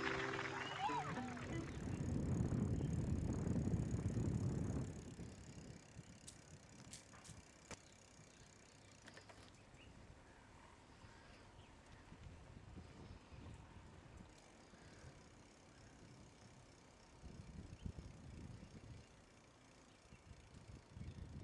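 The last of a song fades out at the start. Then comes a low rumble of wind and rolling noise from a moving bicycle for a few seconds. It drops to faint background with a few light clicks.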